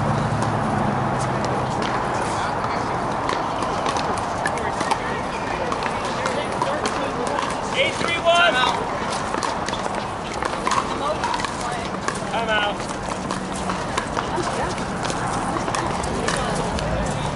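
Sharp pops of pickleball paddles hitting the plastic ball on the surrounding courts, scattered irregularly, over a steady murmur of voices, with a louder call about eight seconds in.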